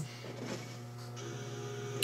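Faint film soundtrack heard in the room: steady sustained tones over a constant low hum, with a higher steady tone joining about halfway through.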